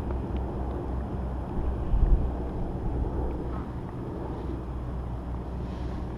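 Wind buffeting the camera's microphone, a steady low rumble, with a brief thump about two seconds in.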